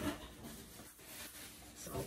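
Faint rustling and handling noise as fingers are wiped clean and a plastic bag of focaccia dough is picked up.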